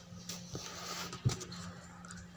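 Faint handling sounds of a hand tool being brought to a motorcycle clutch, with one sharp knock about a second in over a low steady hum.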